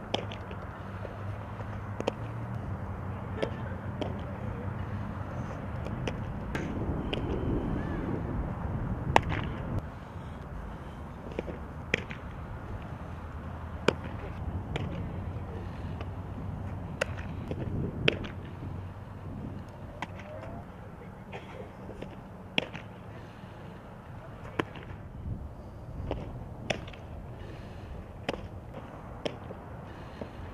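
Sharp pops of softballs striking a catcher's mitt, one every second or two, over a steady low hum.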